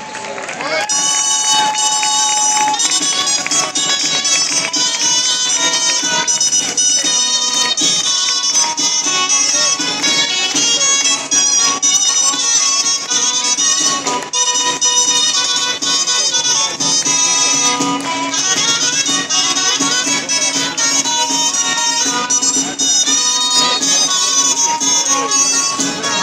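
Gralla, the Catalan double-reed shawm, playing a traditional melody at a steady, loud level, with a held low note underneath in the second half.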